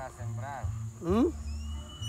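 A person's voice making two short wordless sounds, the second louder and rising in pitch, over a low steady rumble.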